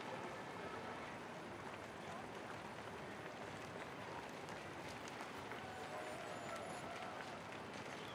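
Steady din of a mass running race: many runners' footsteps on a cobbled street mixed with a general hubbub of crowd voices.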